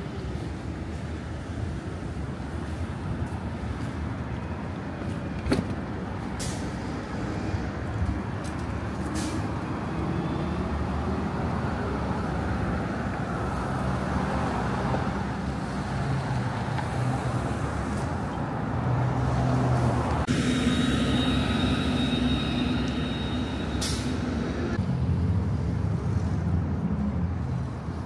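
City street traffic: cars and a bus passing on the road, growing louder past the middle. A high steady whine cuts in for a few seconds about two-thirds of the way through.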